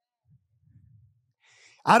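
A pause that is nearly silent apart from a faint low murmur, then a man draws a short breath and starts speaking near the end.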